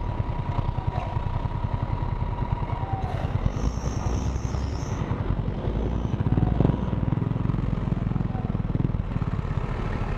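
Scooter engine idling with a steady low pulse, in street traffic. A brief high hiss sounds about halfway through, and a knock about six and a half seconds in comes as the camera is jostled.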